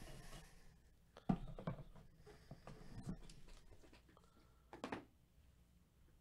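A few faint, short knocks and clicks over quiet room tone, the sharpest about a second in and another near the end.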